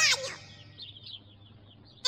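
A brief high-pitched, squeaky cartoon-squirrel vocal sound right at the start, trailing off into faint chirpy chatter that dies away within about a second and a half.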